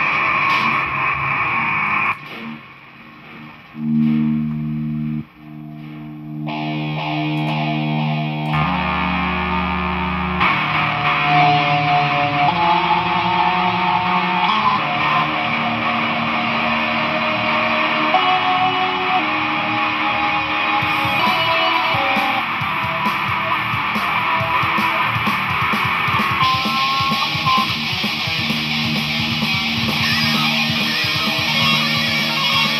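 Electric guitar played through effects pedals and a multi-effects unit with heavy distortion. A held chord cuts off about two seconds in, a few sustained low notes ring out, then dense distorted playing builds from about ten seconds on.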